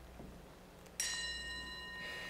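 A brass singing bowl struck once with a mallet about a second in, then ringing on with several clear, steady high tones that slowly fade.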